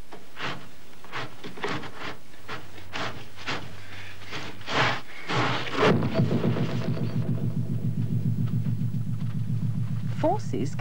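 A wooden door being thumped and rattled, a string of sharp knocks and bangs about twice a second. About halfway through, electronic theme music with a steady pulsing beat takes over.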